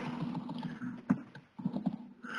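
Computer keyboard keys tapped several times, light separate clicks over a steady low hum on the line.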